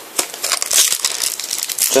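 Foil trading-card packet crinkling and crackling as it is handled and opened by hand.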